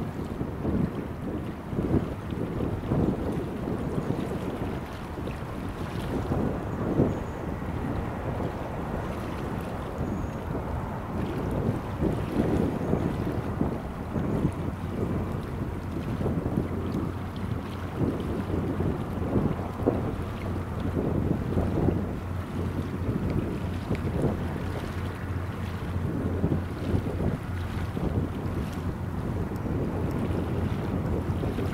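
Wind buffeting the microphone in uneven gusts, a low rumble, with a steady low hum coming in about halfway through.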